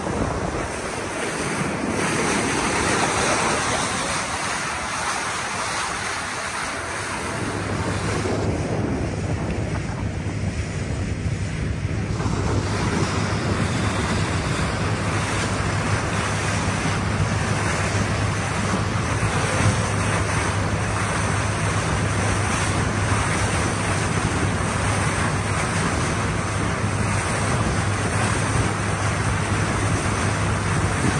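Motorboat under way: water rushing past the hull and wind buffeting the microphone, with a steady low engine hum that joins about a quarter of the way through.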